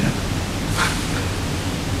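Steady, even hiss of background noise with a faint low hum underneath, and a short burst of brighter hiss just under a second in.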